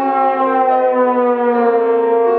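Bass trombone holding a loud note and sliding it slowly downward in a glissando, the slide moving outward as the pitch falls.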